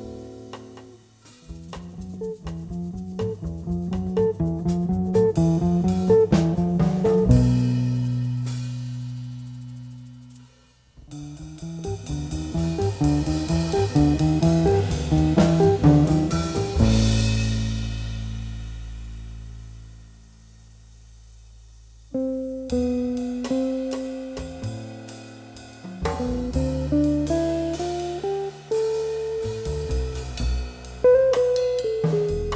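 Jazz guitar trio music: electric guitar playing quick single-note lines over bass and drums, with two breaks in the runs where long low notes are held, and a rising run of notes near the end.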